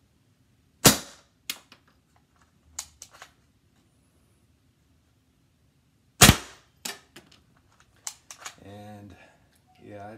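Paintball gun's gas blast firing foam darts out of a Nerf Maverick revolving cylinder: two sharp shots about five seconds apart, each followed by a few lighter mechanical clicks.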